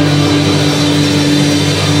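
Live rock band playing loud, with a chord held steady.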